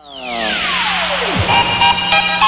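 Radio broadcast jingle: a falling swoosh sweeps from high to very low pitch over about a second and a half. Then steady electronic musical tones begin.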